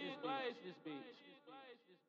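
A man's voice trailing off in a repeating echo effect, the same short sound coming back about four or five times a second, each repeat quieter, until it fades out near the end.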